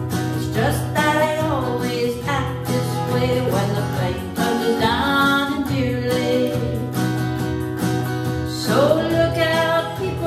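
A woman singing a country song to her own strummed acoustic guitar, rising into a long held note near the end.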